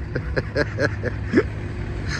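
A person laughing in about five short bursts over about a second and a half, the last one rising in pitch, over the low steady rumble of a vehicle engine close by.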